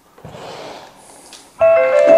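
An electronic chime melody, held bell-like notes at several pitches, starts suddenly and loudly about a second and a half in, with new notes joining as it plays; before it there is only a faint murmur of room noise.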